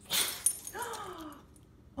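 A Boston terrier "talking": a short breathy huff, then a drawn-out whiny grumble that falls in pitch.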